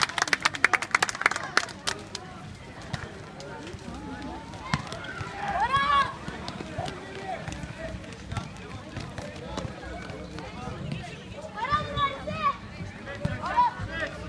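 Quick clapping for the first second or so, then scattered shouts and calls from players and spectators over the general din of a youth basketball game.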